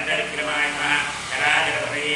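A man chanting Sanskrit mantras in a steady, continuous recitation, amplified through a microphone: a litany of the deity's names, each ending in "namaha".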